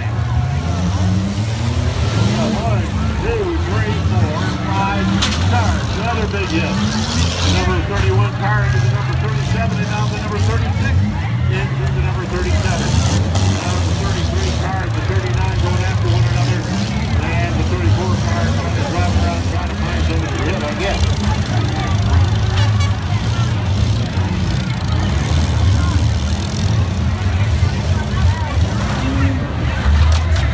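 Engines of several small four-cylinder and V6 demolition derby cars running and revving, rising and falling in pitch. A few sharp knocks come through, around five, seven and thirteen seconds in.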